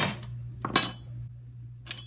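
Metal pieces clinking as the separated sterling silver knife handle and stainless blade are set down on the workbench. Three sharp ringing clinks: one at the start, the loudest a little under a second in, a faint one near the end.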